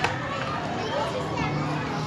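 Children's voices chattering and calling out while they play a jumping game with an elastic, with a sharp tap right at the start.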